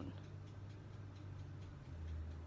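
Quiet room tone: a steady low hum with faint ticking.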